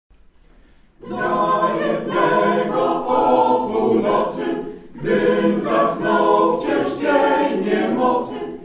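Mixed choir of women's and men's voices singing a Polish Christmas carol a cappella. The singing comes in about a second in, with a short breath between phrases around the middle.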